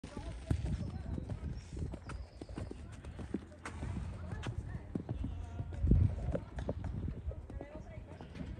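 Horse's hooves on sand arena footing, an irregular run of soft knocks as it walks and then trots away, with a louder low bump about six seconds in.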